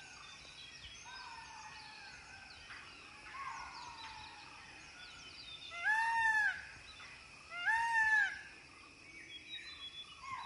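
An Indian peafowl gives two loud calls, about six and eight seconds in, each rising and then falling in pitch. Faint falling whistles from other birds repeat throughout.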